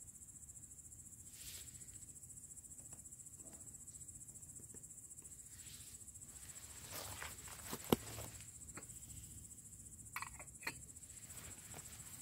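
Crickets trilling steadily in the night, faint and high-pitched, with a few soft crackles and pops from a small wood fire burning in a folding twig stove, the sharpest pop about two-thirds of the way through.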